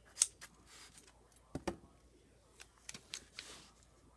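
Paper and tape being handled at a craft desk: a strip of tape pressed along a folded paper edge, giving a few light clicks, the sharpest just after the start, and two brief soft rustles.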